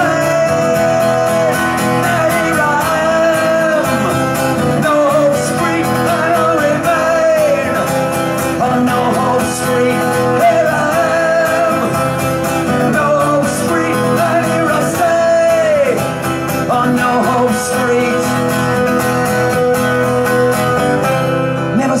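A man singing a punk song live with a strummed acoustic guitar, holding long notes that fall away at the ends of lines.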